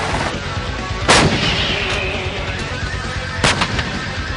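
Type 74 tanks' 105 mm main guns firing: two loud shots about two and a half seconds apart, with fainter reports between and just after.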